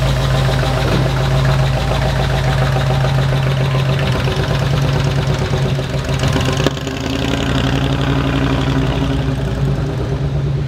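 1975 Ford Bronco's V8 engine running steadily, the header-leak ticking gone after new graphite header gaskets. A sharp click comes about seven seconds in, and then the engine runs on a little quieter.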